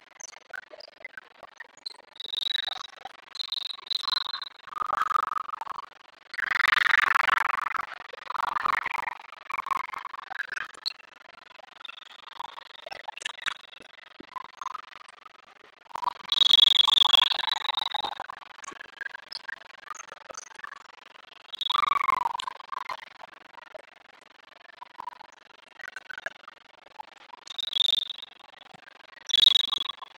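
Gym ambience in a multi-court volleyball hall: referee whistles blown several times, one held for over a second, among bursts of shouting and clapping that echo around the hall.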